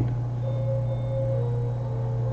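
A steady low hum with a few faint, thin higher tones above it: background noise with no speech and no distinct event.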